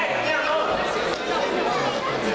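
Crowd chatter: many overlapping voices of spectators talking at once in a school gymnasium, at a steady level.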